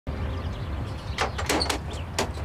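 A wooden front door being opened by its brass handle: a few short clicks and clacks of the handle and latch over a low steady hum.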